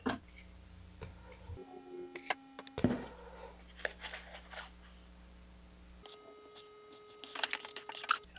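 Faint handling sounds: a few light clicks and short rustles as a wooden centering ring is picked up and worked onto a paper motor tube.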